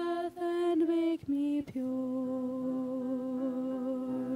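Mixed vocal quartet of female and male voices singing, with short sung phrases and then one long held chord from a little under two seconds in.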